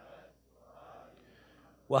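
Faint murmured responses from the audience, many voices blended into two soft swells, after the lecturer's pause. Loud close-miked male speech cuts in right at the end.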